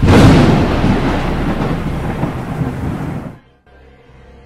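A thunderclap sound effect: a sudden loud crack that rumbles on and fades over about three seconds, then cuts off sharply.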